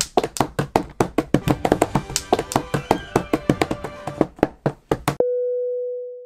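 Hands drumming fast on a wooden table, about seven slaps a second, over faint music. A little after five seconds the drumming cuts off suddenly into a single steady electronic tone that fades away.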